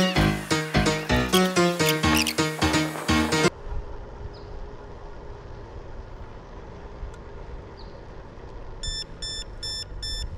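Backing music for the first few seconds, then a low steady rush of wind and rolling noise from the moving Turboant X7 Pro electric scooter. Near the end the scooter gives a rapid run of short high electronic beeps, about four a second, its warning that the battery is fully depleted.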